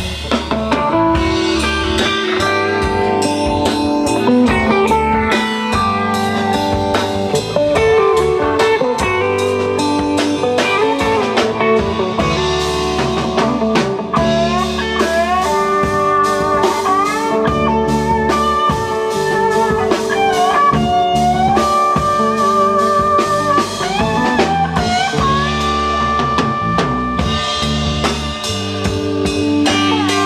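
Live blues band playing an instrumental break: a lead guitar plays notes that bend up and down over a drum kit and a steady bass line.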